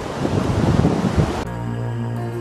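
Wind buffeting the microphone. About one and a half seconds in, it cuts abruptly to calm ambient music with long held notes.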